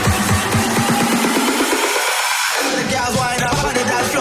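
Background electronic music with a fast bass-drum beat; the low end drops away in the middle and comes back near the end.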